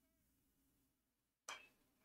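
Near silence, then about one and a half seconds in a single sharp crack of a bat hitting a pitched ball, fouled straight back as a pop-up.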